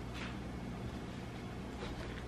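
Small dog eating from a stainless steel bowl: a couple of faint clicks against the metal, one just after the start and one near the end, over a steady low hum.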